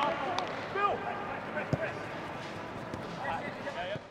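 Distant voices of players calling out on a football pitch during training, with a few sharp knocks of a football being kicked, the loudest one near the middle.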